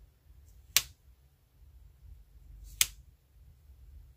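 Two sharp clicks about two seconds apart from tweezers handling small letter stickers and tapping them onto a paper planner page.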